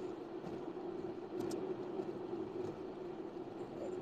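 Faint steady background noise with a constant low hum from an open microphone, and a couple of faint clicks about a second and a half in.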